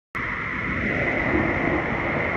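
Wind buffeting the microphone over the steady wash of surf on a beach, starting suddenly just after the beginning.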